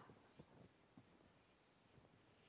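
Faint strokes of a marker pen writing on a whiteboard, a series of short scratches.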